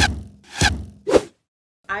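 Three short swoosh sound effects about half a second apart, from an animated on-screen graphic; a woman starts speaking near the end.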